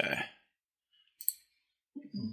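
Two quick clicks close together, about a second in, typical of a computer mouse being clicked.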